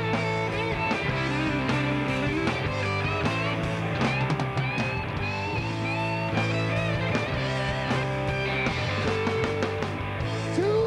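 Live rock band in an instrumental break: an electric guitar solo with bent, sliding notes over a steady bass line.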